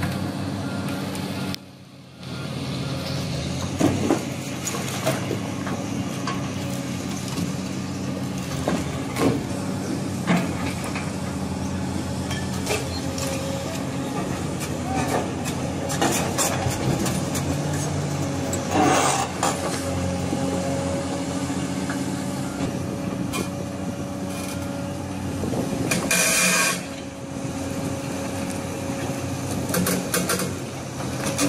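Volvo excavator's diesel engine running steadily while its steel bucket works between marble blocks, with occasional sharp knocks of steel on stone and a longer grinding scrape near the end.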